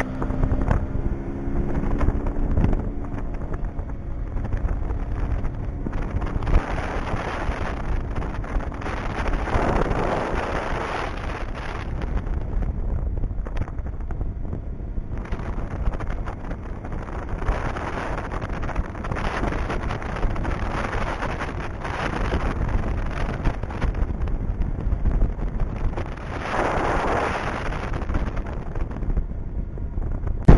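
Heavy wind noise on the microphone of a small boat under way, swelling and easing in gusts over the running of the boat's motor and its hull on the water.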